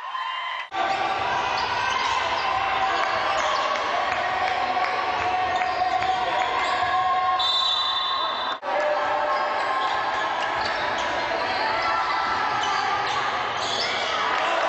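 Indoor basketball game sound: steady crowd noise in a large hall with a basketball being bounced. It breaks off abruptly twice, just under a second in and about eight and a half seconds in.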